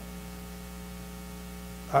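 Steady electrical mains hum, a constant low buzz with many even overtones, unchanged through the pause. A man's brief "uh" cuts in at the very end.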